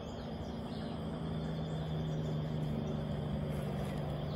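A steady low motor hum that grows louder from about a second in, over rough outdoor background noise with a few faint high chirps.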